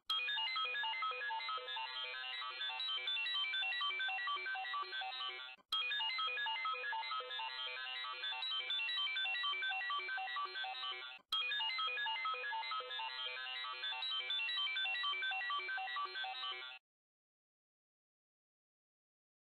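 Synthesized, ringtone-like startup jingle of a fictional MC-OS boot screen: a quick run of notes, played three times, each about five and a half seconds long and cut off abruptly with a click.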